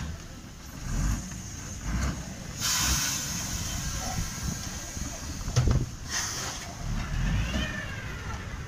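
Fire engine's engine running with a steady low rumble, broken twice by short hisses of air, about a third of the way in and again near three-quarters, and a single knock just before the second hiss.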